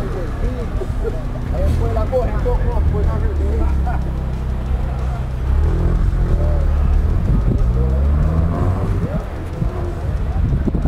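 A vehicle engine running close by as a low, steady rumble that grows louder partway through, with people talking in the background.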